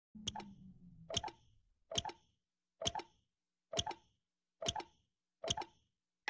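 A clock ticking steadily, the potato-powered clock working: seven ticks a little under a second apart, each a quick double click. A low hum fades out in about the first second.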